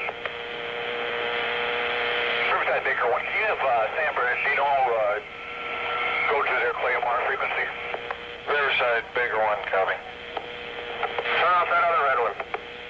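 Police radio transmissions with garbled voices coming through a narrow, tinny radio channel. A steady hum and hiss fill the first couple of seconds before the talk begins, and the hum runs on under it.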